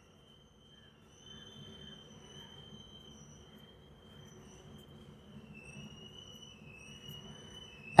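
Faint scratching of a pencil on paper as a word is written by hand in small letters, under a faint steady high-pitched whine.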